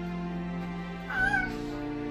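Background music playing, with one short, high meow from a cat about a second in.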